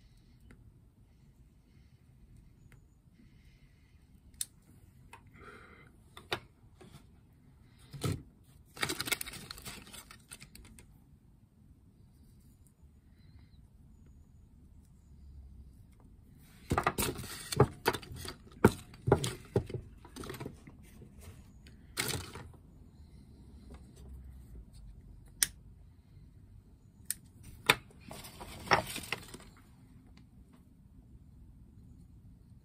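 Scattered small clicks, taps and brief hissing bursts as a briar pipe and a lighter are handled while the pipe is lit and drawn on. The busiest clusters come about a third of the way in, just past the middle, and near the end.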